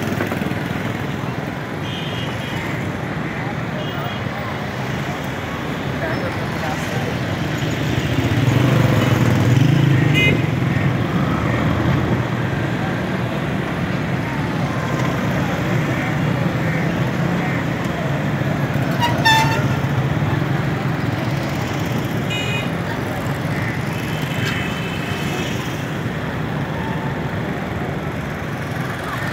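Busy street traffic with motorcycle and auto-rickshaw engines running, swelling as vehicles pass close about a third of the way in. Short horn toots sound now and then, the sharpest a little past the middle.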